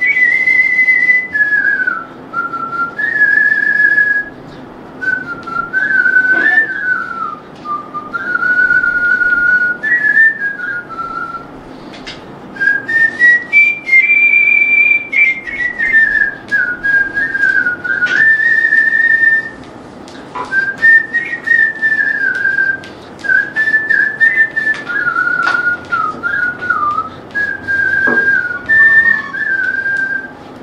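A person whistling a song melody: a single clear tone stepping between notes in phrases, with short breaks between phrases.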